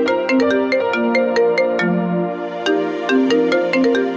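Background music: a melody of short, bright chiming notes, about three or four a second, over held lower tones.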